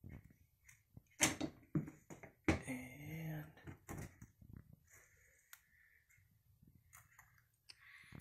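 Faint, scattered clicks and light knocks from hands handling a tube of RTV gasket maker against the metal transaxle case as a bead is laid around the flange, with a brief murmured word.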